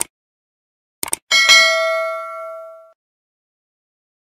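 Subscribe-animation sound effects: two quick clicks about a second in, then a notification bell ding that rings with several tones and fades out over about a second and a half.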